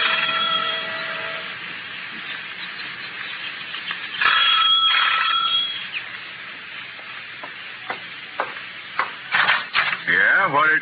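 A radio-drama music bridge fades out over the first second and a half. Near the middle comes a brief loud burst with a held ringing tone, then a few sharp knocks and a quick cluster of louder knocks near the end.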